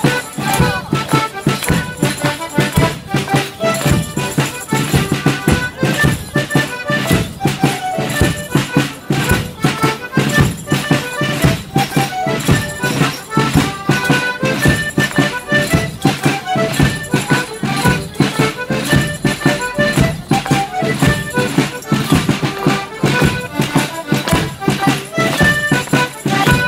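Traditional folk dance tune played live for morris dancing, a lively melody over a steady, evenly repeating percussive beat.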